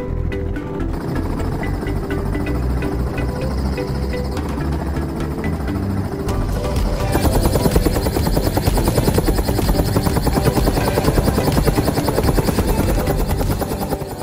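Small helicopter running on the ground just after landing, its rotor still turning, with a steady low rumble that turns into a louder, rapid rotor chop from about seven seconds in. Music plays over it.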